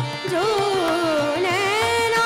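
Khayal singing in Raga Bhoopali: a woman's voice sings a gliding, ornamented phrase that sways downward and then rises back to a held note near the end. It is accompanied by a tanpura drone and low tabla strokes.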